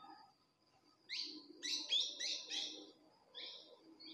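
A bird calling: a quick run of about six sharp, rising chirps about a second in, then two or three shorter chirps near the end, all faint.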